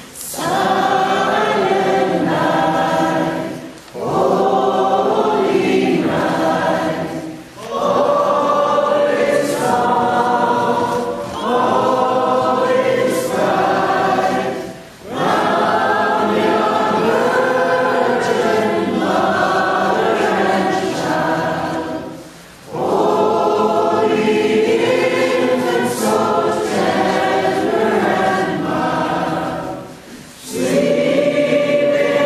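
A group of voices singing a song together, like a choir, in phrases a few seconds long with short breaks for breath between them.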